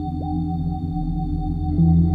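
Ambient electronic music: sustained low synthesizer drones under thin steady high tones, with a run of quick downward pitch swoops in the middle range. A new, louder low note comes in near the end.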